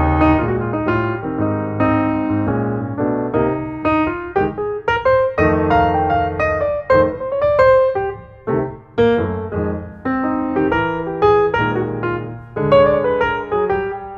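Background piano music: a solo piano playing notes in quick succession.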